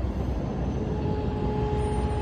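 Steady low rumble of road traffic at a street crossing. A steady mid-pitched tone comes in about halfway through and holds.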